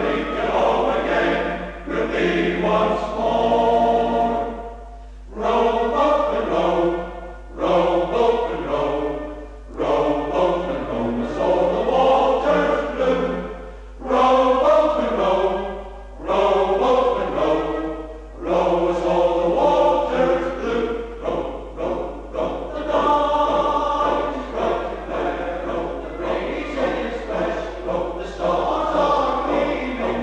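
Male voice choir singing a slow piece in sustained phrases, with short breaks for breath between them, heard from an old cassette recording.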